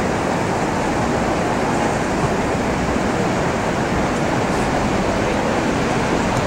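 Steady rushing noise of surf breaking on a sandy beach, mixed with wind on the microphone.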